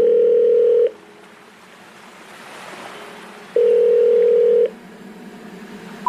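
Electronic background music: a loud held synth note of about a second, then a soft swelling hiss, then the same held note again about three and a half seconds in.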